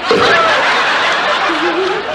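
A studio audience laughing steadily for the whole stretch.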